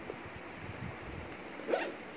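A handbag's zipper being pulled, a short rasp near the end, over faint handling noise of the bag.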